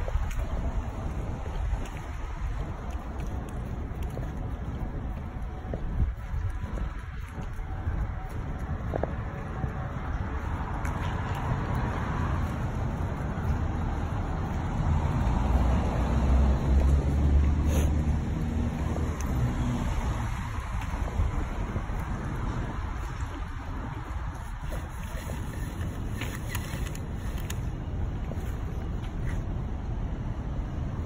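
Outdoor traffic and wind noise: a steady low rumble on the microphone, with a vehicle passing that swells louder for several seconds in the middle.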